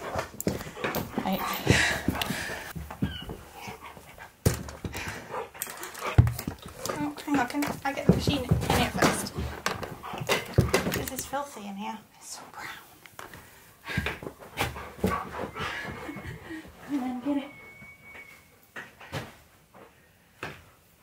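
Husky-malamute dog panting, with a few short whining vocal sounds, among scattered knocks and thumps during a game of fetch with a tennis ball.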